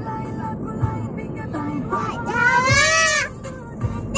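A toddler singing in a high, wavering voice, holding one long note about two and a half seconds in, with music playing in the background.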